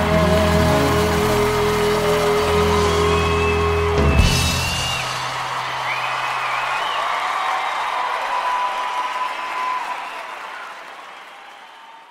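A live band holds its final chord, ending on a crash about four seconds in. Then audience applause and cheering takes over and fades out toward the end.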